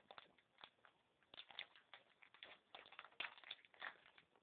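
Faint, irregular crinkling and clicking of a Mega Bloks plastic blind pack being opened and handled.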